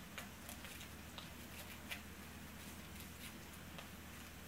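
Faint, scattered small clicks and rustles of a winter dog boot being handled and worked onto a French bulldog's front paw, over a steady low hum.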